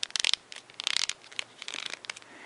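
Folded origami paper crinkling and rustling in short crackly bursts as the last flap of a paper ninja star is pushed into its pocket, the longest burst about a second in.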